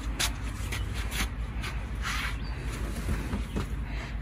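Light rustles and scuffs of a king-size mattress being handled and shifted upright, a few short knocks and one longer rustle about two seconds in, over a low steady rumble.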